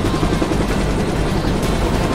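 Helicopter rotor and engine running steadily, with a fast low flutter.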